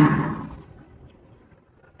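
The end of a spoken word trailing off in the first moment, then a pause of quiet room tone that falls to near silence.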